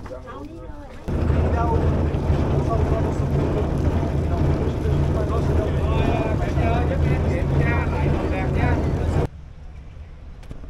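A river tour boat's engine runs as a steady low drone, with rushing wind and water over it. It starts about a second in and cuts off suddenly near the end.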